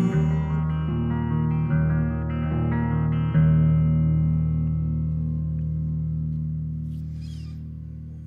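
Electric guitar playing the closing chords of a song: a few chord changes, then a last chord struck about three and a half seconds in and left to ring, fading slowly.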